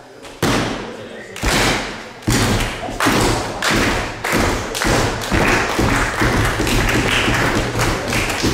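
Rhythmic thuds and claps in a hall. Three slow single thuds come first, then a steady beat that speeds up to about two a second: the wrestler pounding the ring canvas, with the crowd clapping along.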